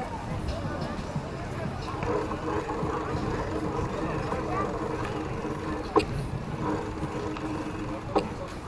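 Passers-by talking over a steady low rumble and hum, with one sharp knock about six seconds in.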